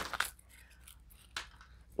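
A few light clicks and rustles as a small keychain tape measure is handled just after being freed from its packaging, then one more single click about a second and a half in.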